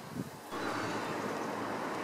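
Steady background noise with no distinct event, starting about half a second in.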